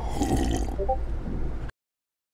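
A long, rough burp that stops abruptly near the end, cut to dead silence.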